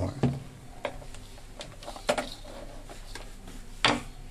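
A few scattered light clicks and knocks as test leads and a plastic clamp meter are handled on a workbench, with the loudest click near the end.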